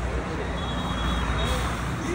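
Night street ambience: a steady low rumble of road traffic with faint background voices.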